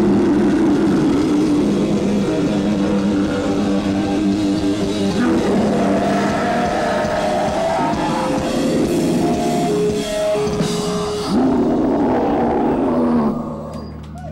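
Death/doom metal band playing live, loud guitars and drums in a dense wall of sound with long held notes; it drops away about a second before the end.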